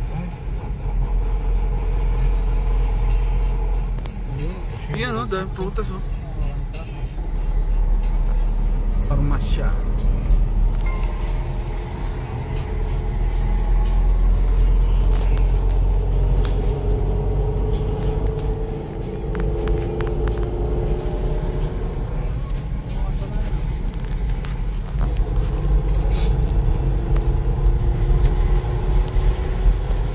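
Car interior noise while driving along a city street: a steady low rumble of engine and tyres, with a few brief sharper sounds about five, nine and twenty-six seconds in.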